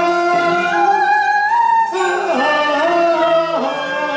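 A woman singing Cantonese opera (粵曲) over instrumental accompaniment: long held notes that slide and bend in pitch, in two phrases with a short break about two seconds in.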